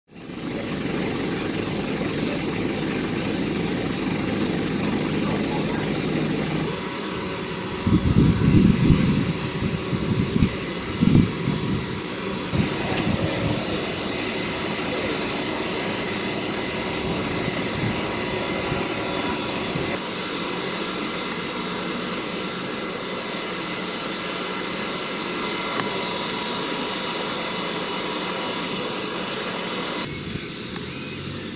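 Steady drone of an idling fire engine, with several steady hum tones in it. Between about 8 and 12 seconds in, a few loud low rumbles break over it.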